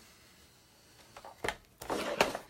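Quiet handling, then a few sharp knocks in the second half, loudest near the end, as a Big Shot die-cutting and embossing machine is moved and set in place on a table.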